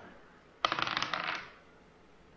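A die rolling and clattering on a hard tabletop, a quick rattle of small clicks lasting under a second, starting about half a second in. This is a d20 attack roll.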